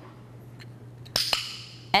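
A dog-training clicker clicking: two sharp clicks about a fifth of a second apart, marking the moment the dog lies down on its mat. The trainer calls her timing on the click a little bit off.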